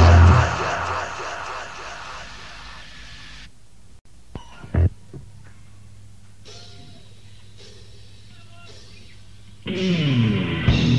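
A death/doom demo band's distorted guitars and drums ringing out and fading at the end of a song. This is followed by several seconds of steady low tape hum with a short knock and a few faint sounds. The band comes back in near the end as the next song starts.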